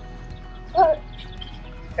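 A short, pitched shout (kiai) just under a second in, from a tae kwon do student as he kicks; faint steady tones run underneath.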